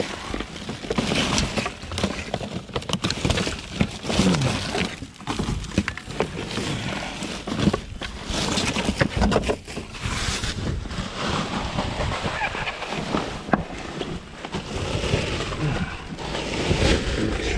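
Plastic bags, wrappers and cardboard rustling and crinkling as trash is rummaged through by hand inside a dumpster, with irregular knocks and crackles as items are shifted.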